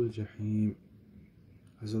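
A man speaking, with a pause of about a second in the middle.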